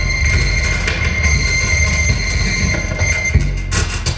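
Live electronic music played on synthesizers and effects gear: a dense low rumble under steady high whistling tones. The high tones cut off a little over three seconds in, and a sharp hit follows near the end.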